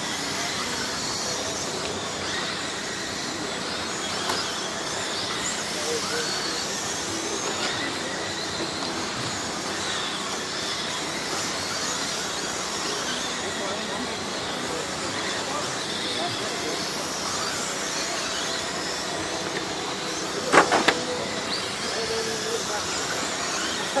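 Radio-controlled dirt oval late model cars racing, their motors whining and rising and falling in pitch as they go round the oval. A sharp knock about twenty seconds in is the loudest sound.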